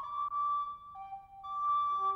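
Background music: a slow, solo flute-like melody of long held notes, dropping to a lower note about halfway through before returning.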